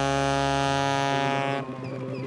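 Live band music: a held keyboard chord that cuts off about one and a half seconds in, over a wavering, warbling tone that carries on after it.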